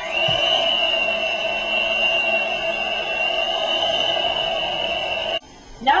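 Electric hand mixer running steadily at one speed, a high whine over a lower motor hum, beating a butter, powdered sugar and marshmallow filling. It cuts off suddenly about five and a half seconds in.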